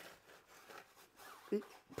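Faint scrubbing of a stiff-bristled detailing brush over a wet alloy wheel and tyre coated in foaming wheel cleaner, with a brief hum of voice about one and a half seconds in.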